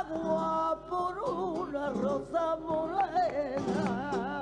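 Flamenco cante: a voice singing a long, wavering, ornamented line with vibrato, over guitar accompaniment and sharp hand claps (palmas).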